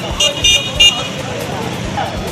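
Three quick, short, high-pitched toots of a vehicle horn within the first second, over busy street noise and crowd chatter.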